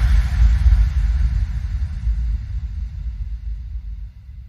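The tail of a hardstyle track: a deep bass rumble on its own, fading slowly away.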